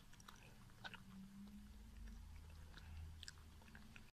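Faint chewing: small irregular clicks of a cat eating a piece of dried sweet potato, over a low steady hum.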